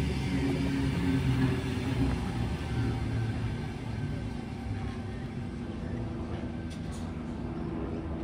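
Sydney Tangara double-deck electric train passing close by with a steady low rumble. The rumble drops to a quieter, even running sound after about three and a half seconds.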